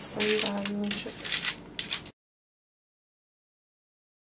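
A woman's voice briefly, with crackling rustles of parchment baking paper as dough pieces are set on a lined tray; about two seconds in the sound cuts off to total silence.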